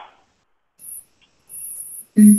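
A faint, high-pitched steady tone that comes in just under a second in, breaks off briefly, and returns near the end, after a short dropout to silence.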